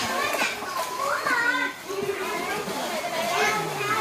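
Children's voices, high-pitched calls and chatter, at a swimming pool, with water sloshing as the children move about.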